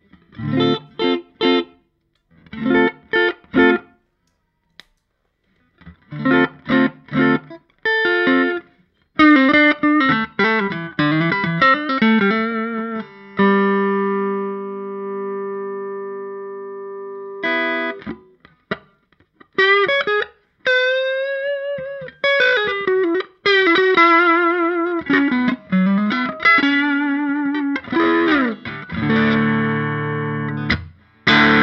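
Electric guitar played through a Richon Ketchup overdrive pedal: a few short, choppy chord stabs separated by silences, then a lead line. In the middle a note is held for about four seconds, followed by bent notes with vibrato and chords near the end.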